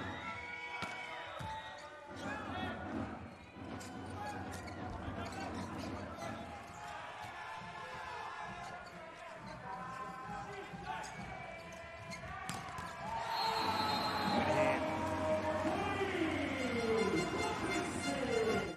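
Volleyball rally in an indoor arena: sharp ball hits off hands and floor over steady crowd noise. The crowd and players grow louder, cheering and shouting, from about three-quarters of the way in, as the point is won.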